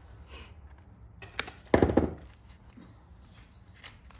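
A thin wooden stem of a dried lotus pod being cut with hand snips: a small click, then a sharp crack a little under two seconds in as the stem gives.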